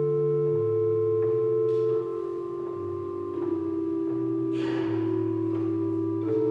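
Small wooden chest organ playing slow, held chords, the low notes shifting every second or so and the playing growing softer about two seconds in. A short burst of noise cuts through about four and a half seconds in.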